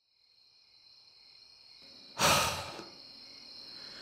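Steady, high chirring of crickets in a night-time forest ambience, with one loud breathy sigh a little over two seconds in.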